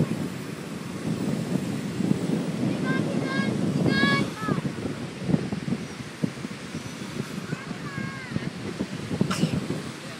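Wind buffeting the microphone in an uneven rumble, with a few brief high-pitched calls about three to four seconds in and again near eight seconds, and a single click shortly after nine seconds.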